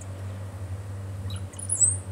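A single short, high-pitched bird chirp near the end, over a steady low hum.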